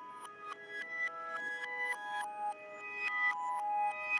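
Ballerina jewellery music box playing a tune: the pins of its turning cylinder pluck the steel comb, giving single bell-like notes at three to four a second, each ringing on and fading.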